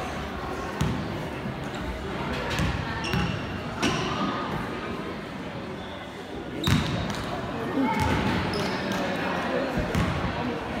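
Basketball bouncing with sharp knocks on a hardwood gym floor in an echoing gym, over the chatter of a crowd. The loudest knock comes about two-thirds of the way in, as a free-throw shot reaches the hoop.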